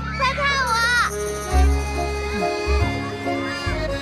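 Children's high-pitched shrieks and laughter for about the first second, then background music with sustained notes and recurring deep bass notes takes over.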